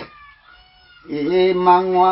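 A man singing a Limbu hakpare samlo breaks off for about a second, then comes back on a long held note.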